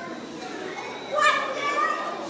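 A child's high-pitched voice calls out about a second in, over low background voices.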